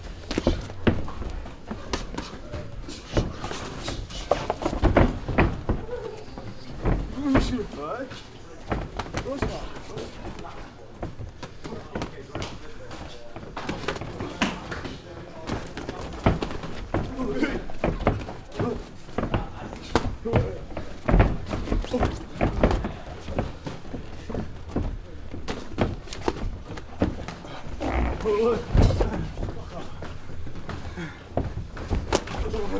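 Gloved punches and shin-guarded kicks landing during Muay Thai sparring: a run of irregular thuds and slaps on gloves and bodies, mixed with voices.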